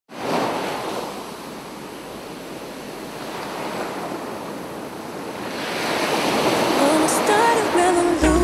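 Ocean surf breaking and washing up on a beach. It is a steady rush that swells at the start, eases, and builds again toward the end. Near the end a wavering musical tone comes in as the music begins.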